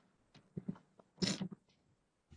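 A pet animal's short calls, heard through a video-call microphone: a few brief ones, then a longer, louder one a little over a second in.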